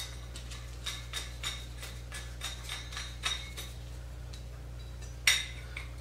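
Light, irregular clicks and clinks of small fuel-line fittings, gaskets and nuts being handled and fitted together by gloved hands, with one sharper click near the end.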